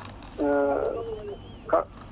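A person's voice holding a drawn-out vowel for about half a second, then dropping to a lower steady hum, with a short burst of speech near the end.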